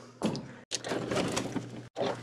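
Knocking and scraping from equipment being moved about by hand, broken off abruptly twice.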